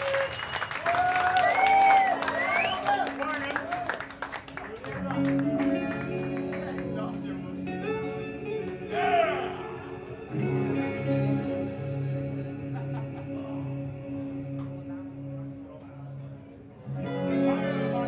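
Crowd cheering, whooping and clapping for the first few seconds. Then electric guitars come in with slow, sustained notes, and from about halfway a repeating low-note figure underneath. The guitars get louder again near the end.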